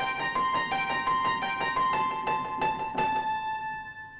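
Acoustic piano recording played through the Radial Space Heater's tube drive at its 140-volt plate-voltage setting, the piano coloured by tube distortion. Evenly repeated notes come about three a second, and the last chord rings out and fades near the end.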